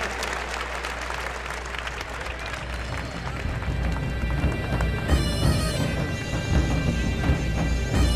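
Arena crowd applauding, easing off over the first seconds, as background music with a steady low beat comes up and carries on.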